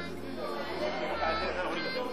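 Several people chattering in a meeting room, over background music with a steady bass line that changes note about a second in.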